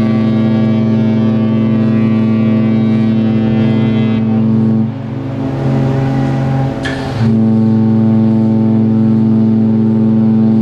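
Cruise ship's horn sounding long, deep blasts: one held to about five seconds in, a brief fainter tone after it, then a second long blast starting about seven seconds in.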